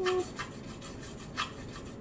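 A paintbrush's bristles scrubbing paint with a steady scratchy rubbing, with two sharper strokes about half a second and a second and a half in. A child's short "ooh" comes at the very start.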